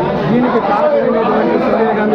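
Speech: a man talking, with other voices chattering around him in a room.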